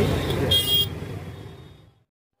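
Street traffic rumble with a short vehicle horn toot about half a second in, then the sound fades out.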